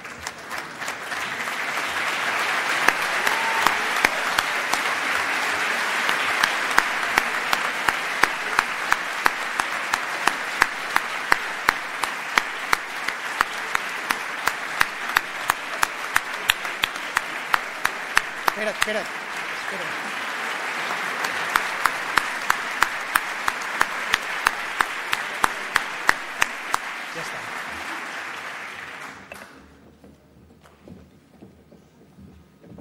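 Audience applause filling a large hall. Single sharp claps from one nearby clapper stand out at about two a second through most of it. The applause dies away near the end.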